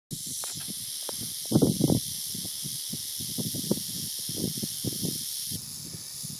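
Mojave rattlesnake (Crotalus scutulatus) rattling its tail in a steady high buzz, a defensive warning given at close range instead of striking. The buzz eases slightly near the end, and a few louder low bumps come about a second and a half in.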